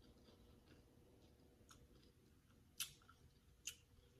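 Faint chewing of a mouthful of raw green bell pepper with cream cheese and Takis chips, with two sharper crunches near the end.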